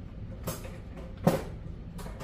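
Two knocks of kitchen utensils and cookware being handled, the second louder, over a low steady hum.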